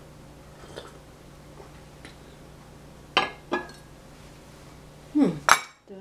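A metal fork and china clinking: two sharp, ringing clinks a little past halfway, then a louder clatter near the end that cuts off suddenly.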